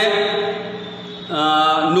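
A man's voice holding drawn-out vowel sounds at a steady pitch, one at the start and another from just past the middle, like hesitation sounds in spoken narration.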